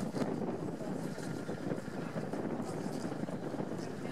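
Wind buffeting the microphone in a steady, gusting rumble, with the soft hoofbeats of a cantering horse on the arena surface faint beneath it.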